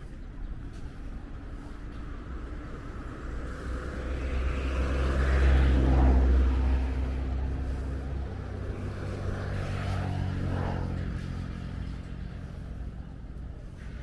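Motor vehicles passing on a street. One swells to a loud pass around the middle and fades, and a second, quieter one goes by a few seconds later.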